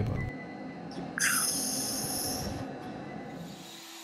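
Compressed-air hissing from an automatic-tool-change CNC spindle at its tool rack. A short rising whine about a second in is followed by a hiss lasting about a second and a half, over a low steady machine background.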